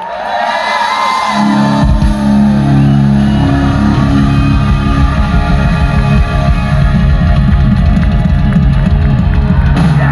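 Live rock band with electric guitars, bass and drums playing loudly, heard from within the audience. After some bending guitar notes at the start, the band holds a sustained chord over heavy, rapid drumming from about two seconds in.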